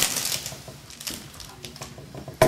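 Baseball trading cards being handled in the hands: a brief papery rustle at the start, then a run of light clicks and flicks as the cards are thumbed through.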